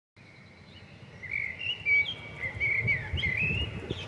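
Birds chirping in short rising and falling calls over a low, uneven outdoor rumble, fading in at the start.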